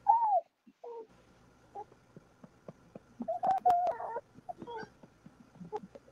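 A baby cooing and babbling: a short rising-and-falling coo at the start, a few small sounds, then a longer steady coo about three and a half seconds in.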